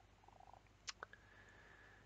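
Near silence: room tone, with two faint short clicks about a second in.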